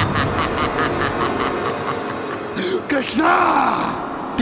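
A man's theatrical villain laughter, a long run of rapid "ha-ha-ha" pulses that fades away, followed by a short growled vocalisation near the end.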